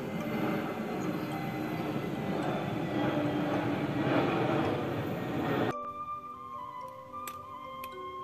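Jet airliner passing overhead: a steady, loud rushing rumble that peaks a little past the middle and cuts off abruptly about two-thirds of the way in. Instrumental background music plays under it and is left alone afterwards.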